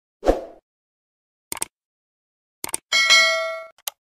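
Sound effects for a subscribe-button animation: a short hit, two mouse clicks, then a bright bell-like notification ding that rings and fades over most of a second, and one more click near the end.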